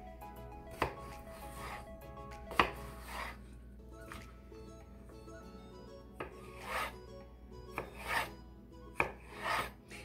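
Kitchen knife slicing a zucchini into thin strips on a bamboo cutting board: a series of irregular cuts, with the blade tapping the wood as it goes through.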